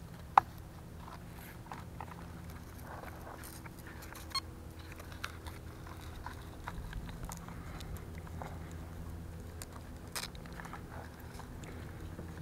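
Faint handling noise as a GPS unit is strapped onto an RC truck's chassis: a sharp click about half a second in, then a few light clicks and rustles, over a low steady hum.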